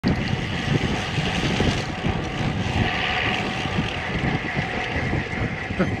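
Wind rushing over the microphone and road-bike tyres rolling on tarmac while the bike freewheels fast downhill: a loud, steady rush with gusty low buffeting.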